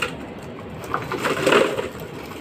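A dove cooing, swelling about a second in, with light rustling from a plastic bag of bottles being handled.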